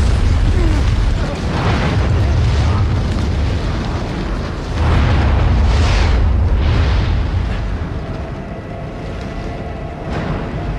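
Explosions: a blast hits just before the start and another about five seconds in, each followed by a heavy, deep rumble that dies down near the end.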